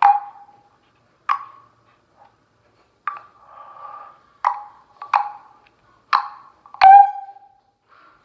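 A handheld megaphone amplifying about seven short, sharp pops, each followed by a brief ringing tone. The pops come at uneven intervals, and the last and loudest, near the end, is so loud.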